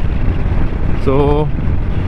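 Motorcycle cruising steadily at about 65 km/h, its engine and the rushing wind making one steady, loud noise with a deep low rumble.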